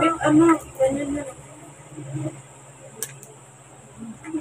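A person's voice speaking briefly in the first second or so, then quieter room sound with a steady low hum and a single sharp click about three seconds in.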